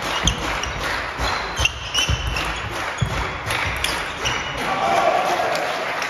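Table tennis rally: the celluloid ball cracking off rackets and the table roughly every half second, echoing in a large sports hall, with shoes squeaking on the hall floor. The strikes stop about three seconds in as the point ends.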